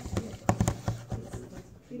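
A plastic Nalgene bottle of water is swirled by hand to form a vortex, knocking against the desktop in a quick series of sharp knocks.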